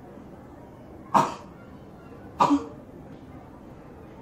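A person coughing twice, the coughs a little over a second apart, the second a double cough.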